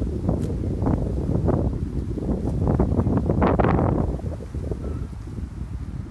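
Wind buffeting a smartphone's microphone, a heavy low rumble, with rustling footsteps through grass and fallen leaves about every half second, busiest a little past the middle and easing off near the end.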